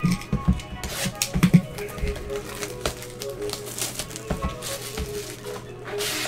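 A cardboard trading-card box being lifted off a stack and handled in gloved hands, with irregular knocks, taps and scrapes, the loudest about one and a half seconds in, over quiet background music.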